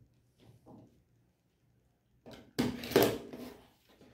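Rotary cutter slicing through fabric along an acrylic quilting ruler on a cutting mat: one loud, scraping cut about two and a half seconds in, lasting about a second, after a few faint handling knocks.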